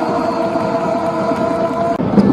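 Indoor sports-hall sound during a handball match: a steady held tone over general hall noise.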